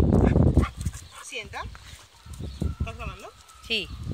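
A dog giving three or four short whines and yips that rise and fall in pitch. A loud rushing noise fills the first half-second.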